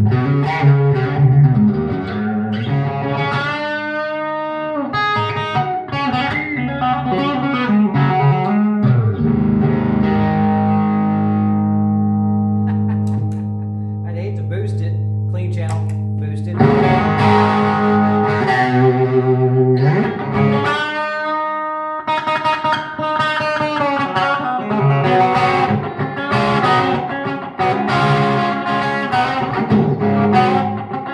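Single-pickup SG Junior-style electric guitar played through an amplifier: lead lines with bent notes, a chord left to ring for about six seconds in the middle, then more busy playing. The player finds the tone poor and blames a cheap speaker rather than the guitar.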